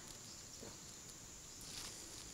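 Quiet outdoor background with a couple of faint, soft sounds: one about half a second in and one near the end.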